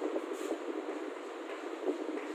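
Chalk writing on a chalkboard: a steady scratching with small taps as the strokes are drawn.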